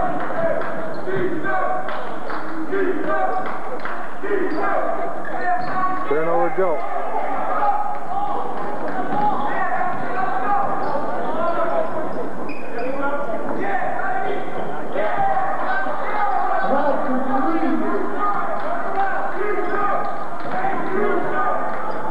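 Many voices talking at once in a gymnasium, with a basketball bouncing on the hardwood court during play.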